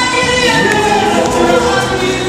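A mixed gospel choir of women and men singing together in harmony, with several voices holding long notes, sung into handheld microphones.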